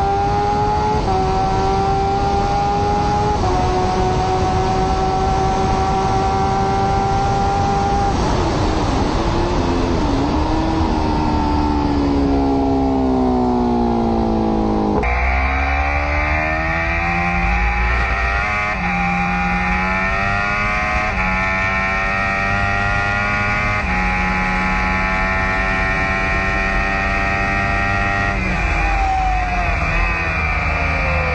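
Kawasaki H2R's supercharged inline-four heard from an onboard camera at speed, under a steady rush of wind. The engine holds high revs through a couple of upshifts, then its pitch falls away as the bike slows. After an abrupt cut it climbs again through a run of upshifts, each a quick step down in pitch, and it eases off near the end.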